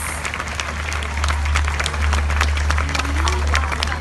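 Audience applauding: many irregular hand claps, with a steady low hum underneath.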